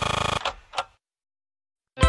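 A brief rattling buzz that stops about half a second in, then two short clicks, then about a second of dead silence before music cuts in at the very end: an edit point between segments of a radio broadcast.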